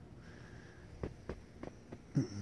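Quiet pause holding a steady low hum with a few faint short clicks in the second half.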